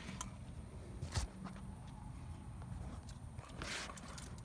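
Faint handling noise: a few light knocks, then a brief rustle near the end, over a low steady hum.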